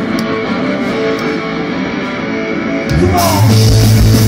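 Live rock band playing loud through the venue PA: electric guitar holding notes with sparse backing, then bass and drums crash back in with the full band about three seconds in.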